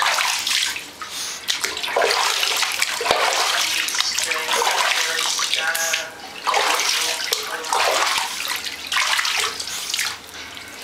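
Water running and splashing in a bathtub while a small dog is bathed, coming in uneven surges with short breaks.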